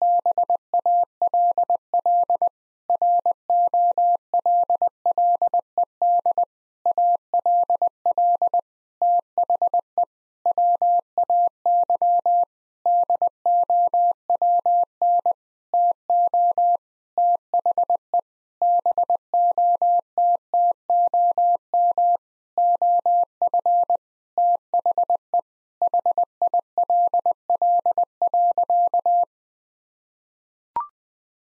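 Morse code practice tone at 20 words per minute: a single steady pitch keyed in dits and dahs with pauses between words, sending the sentence "The ball rolled all the way down to the bottom of the hill." It stops shortly before the end.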